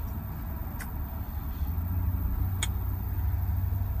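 Two sharp clinks of a metal fork against a plate, about two seconds apart, over a steady low rumble.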